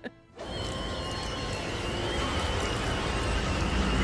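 Horror film score: a low rumble under a high, slightly wavering held note, starting about half a second in and swelling steadily louder.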